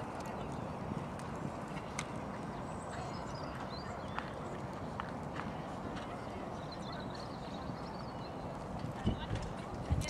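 Pony's hoofbeats at a canter on the sand arena, faint against a steady outdoor background hiss, with a few sharp clicks and a couple of heavier thuds near the end.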